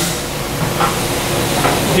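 A steady hiss of background noise, even and unbroken.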